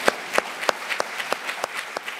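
Audience applauding, with one nearby pair of hands clapping sharply about three times a second above the steady clapping of the crowd.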